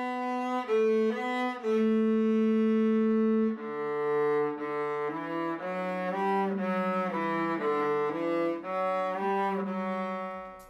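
Cello played with the bow by an adult beginner: a slow melody of long, held notes that step up and down, with one note held for over a second about two seconds in.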